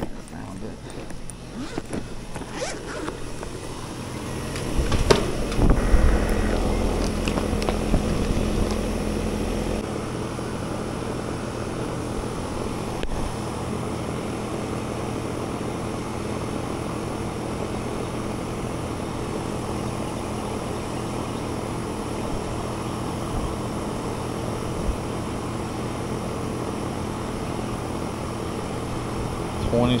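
Outdoor air-conditioning condensing unit running with a steady hum, its refrigerant charge nearly gone through a leak. Knocks and rustling of gauge probes being handled and fitted come in the first several seconds, before the hum settles to an even drone about ten seconds in.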